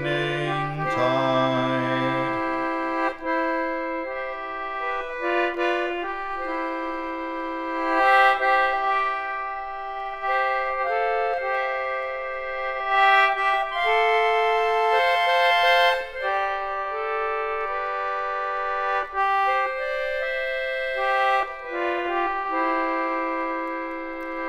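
A vintage Wheatstone 48-key treble 'Pinhole' Aeola English concertina, built about 1898, playing the tune as an instrumental break, with sustained reedy notes and chords that change every second or so. A low held sung note dies away about two seconds in.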